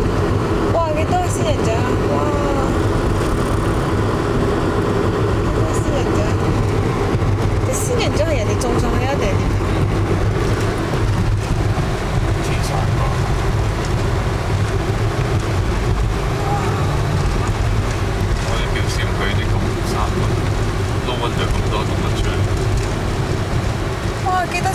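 Steady road and engine drone inside a moving car's cabin, holding an even level throughout.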